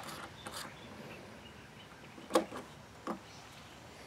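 Quiet room tone with a few short, faint clicks, the clearest a little after two and three seconds in: small metal parts being handled as a nut is started onto the endpin output jack of an acoustic guitar.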